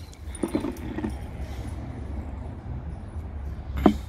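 Hand handling of a suction-cup slab lifter on a wet sandstone paving slab: a faint knock about half a second in and a single sharp click near the end, over a low steady rumble.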